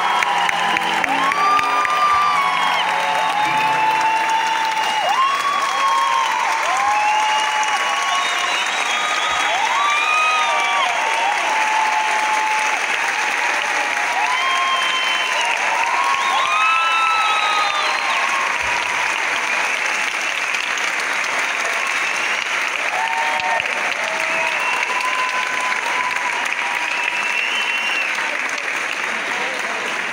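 Audience applauding, with cheering voices calling out over the clapping, easing off slightly toward the end. The sustained last piano notes die away in the first couple of seconds.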